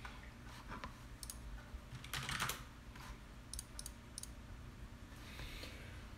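Faint, scattered clicks of a computer mouse and keyboard being worked, with a short cluster about two seconds in and a quick run of three clicks past the middle.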